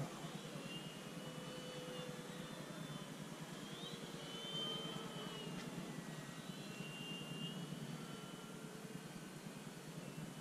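Electric RC model warplanes, an FMS F4U Corsair and an E-flite P-47, flying overhead: the faint whine of their brushless motors and propellers, drifting up and down in pitch as they pass.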